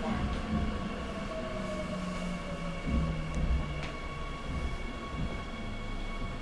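Interior of a Seoul Metro Line 9 subway car in motion: a steady low rumble with a constant high-pitched whine, and another whine drifting slightly down in pitch over the first couple of seconds.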